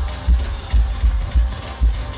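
Amplified live band music with a heavy bass beat about twice a second, the vocal line paused.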